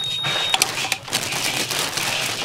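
Hand impulse heat sealer closing a plastic bag of sugar candies: a thin high tone for about half a second while the jaw is pressed down, then a click as the handle is released. After that comes the crinkling and crackling of the sealed plastic bag being handled.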